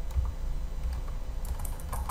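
Typing on a computer keyboard: a few light key clicks over a low steady hum.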